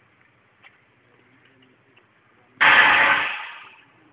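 A sudden loud blast about two and a half seconds in, dying away over about a second, typical of a demolition charge going off.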